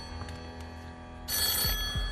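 Telephone ringing: the banker's call coming in with a new offer. A ring fades out at the start and the next ring begins a little past halfway through.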